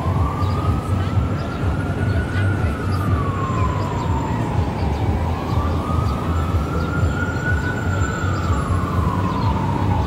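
Emergency vehicle siren wailing, its pitch rising and falling slowly, about one full cycle every five seconds, over a steady low rumble.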